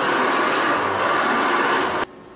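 A circuit-bent radio cassette player played as a noise instrument: a dense, loud wash of radio static and electronic interference with faint steady whines through it. It cuts off suddenly at the end.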